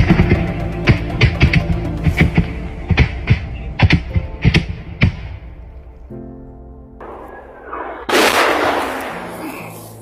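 Gunfire: a string of sharp, irregularly spaced shots over the first five seconds, over background music. About eight seconds in comes a loud, sudden rush of noise that fades away.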